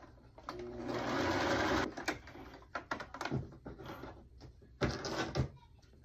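Domestic sewing machine running a zigzag stitch on stretch fabric in one burst of about a second and a half. Then come a string of short clicks and rustles as the fabric is pulled out from under the presser foot.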